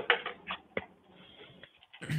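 Keystrokes on a computer keyboard: a quick run of sharp clicks in the first second, then a few faint taps.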